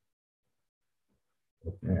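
Near silence, then a man's voice starts speaking near the end.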